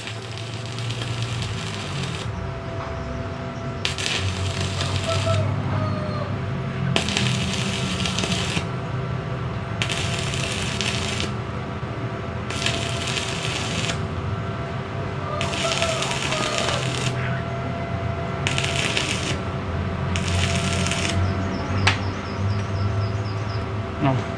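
Stick (shielded metal arc) welding: the electrode's arc crackling and sizzling in spells of one to two seconds with short breaks between them, over a steady electrical hum.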